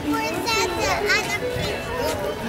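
Children's high-pitched voices chattering and calling, with background music playing underneath.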